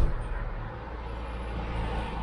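A car driving along the street below, with a steady low engine and road hum that grows again towards the end. A brief knock at the very start.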